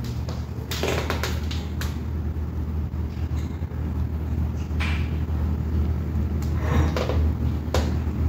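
Steady low hum with a few brief knocks and rustles, one about a second in, one near the middle and two near the end.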